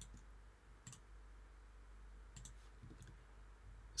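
Near silence with a few faint, sharp clicks spaced about a second apart, from a computer mouse being clicked.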